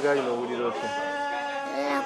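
Speech: a high-pitched voice talking in drawn-out, wavering tones, in words the recogniser did not write down.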